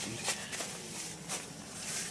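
A few short rustles and scuffs, likely soft footsteps and handling noise on a tent's floor and fabric as someone moves around inside.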